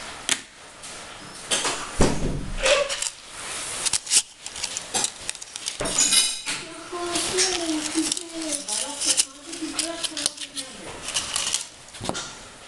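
Plastic craft packaging and a coil of clear plastic lacing being handled, with repeated clicks, rustling and a burst of crinkling about six seconds in. A voice is heard briefly in the second half.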